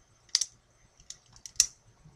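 A twist-action pen being turned: its mechanism gives two sharp clicks about a second apart, with a few fainter ticks between them.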